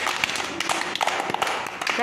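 A group clapping their hands in a quick, dense round of applause: praise for a correct answer.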